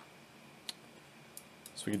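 Quiet room tone with three or four faint, separate computer input clicks as the terminal's manual page is scrolled; a man starts speaking near the end.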